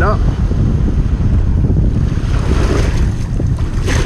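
Heavy wind buffeting the microphone, a steady low rumble, over shallow surf washing around the legs. A brief knock comes just before the end.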